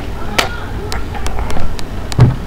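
A handful of sharp clicks or knocks, the loudest about half a second in and several smaller ones after about a second, over a steady low rumble.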